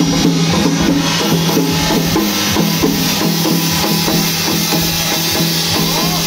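Chinese temple festival percussion: drums beaten in a fast, busy rhythm, with a steady low hum underneath.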